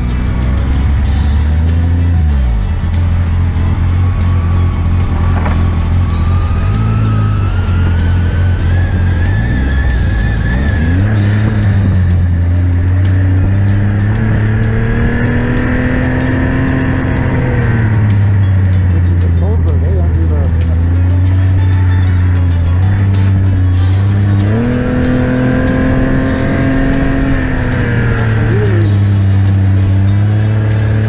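Yamaha snowmobile engine running along a trail, its pitch rising and falling over and over as the throttle is opened and eased, with a dip near the start and another near the end.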